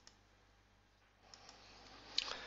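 Near silence with a few faint computer mouse clicks: two at the start and two more about a second and a half in.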